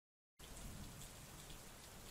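Near silence: dead silence, then about half a second in a faint, steady hiss of room tone.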